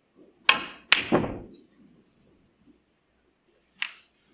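Snooker balls clicking on the table: the tip strikes the cue ball, and about half a second later there is a second sharp click as it hits another ball. A lighter click follows near the end.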